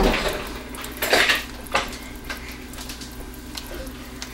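A few sharp clinks and knocks of a utensil against a mixing container while soap batter is poured, the loudest about a second in and another shortly after.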